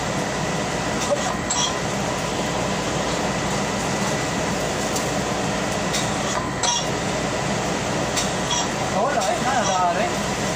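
Steady rushing noise of a laundry pressing machine's vacuum drawing air through the perforated bottom buck plate, with a few light clicks.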